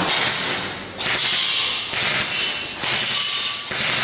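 Airsoft M4-style rifle firing two bursts of rapid fire: a short one, a brief break about a second in, then a longer one of about two and a half seconds.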